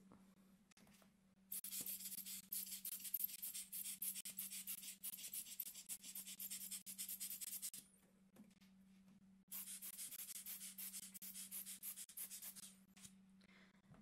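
An air blower blowing dust off photographic film negatives before scanning. It gives two long hissing blasts, the first about six seconds long and the second about three, with a short pause between them.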